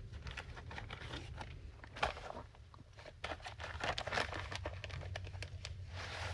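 Paper and a clear plastic bag of paper strips rustling and crinkling as hands rummage through them, in irregular handling noises with a sharper rustle about two seconds in.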